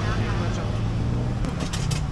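Street traffic: a motor vehicle's engine running close by with a steady low hum that eases off about a second and a half in, followed by a few short clicks.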